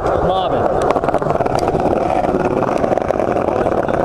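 Loud, steady rumble of wheels rolling over pavement and wind buffeting the microphone while riding along, with scattered clicks. A brief voice sounds about half a second in.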